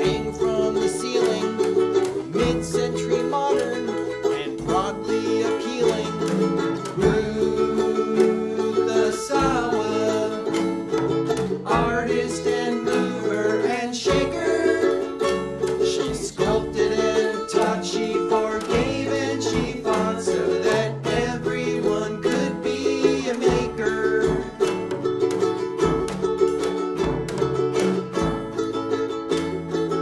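A small band playing a song: strummed ukuleles, electric bass and a drum kit, with a man singing the lead.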